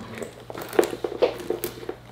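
A Coach handbag being handled and slung over the shoulder: rustling with a run of light clicks and clinks from the metal buckles and clips on its strap, the loudest about a second in.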